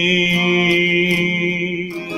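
A man holding one long sung note over a strummed acoustic guitar.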